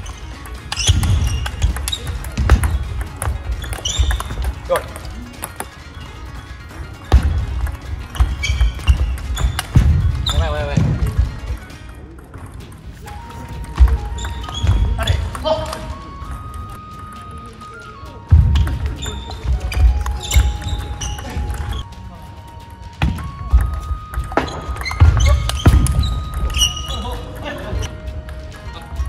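Table tennis rallies on a sports-hall floor: the celluloid ball clicking off rubber paddles and the table in quick runs, with sneakers squeaking and feet thumping during footwork. Background music with simple held notes comes in about halfway through.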